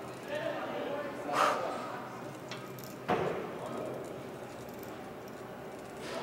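A man breathing hard and grunting through slow, straining cable curl reps. There is a sharp exhale about a second and a half in, and a short thump about three seconds in.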